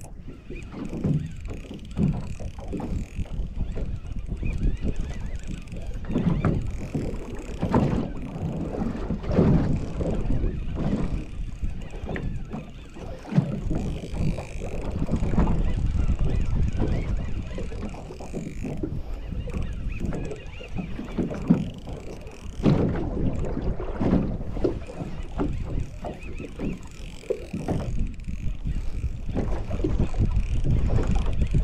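Wind buffeting the microphone and small waves lapping against the hull of a small boat, an uneven rushing that surges and fades.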